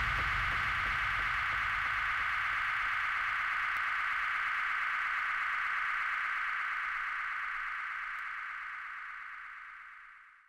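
The closing held synth tone of a bassline house track, a steady bright drone left alone after the bass and drums drop out, fading away over the last few seconds.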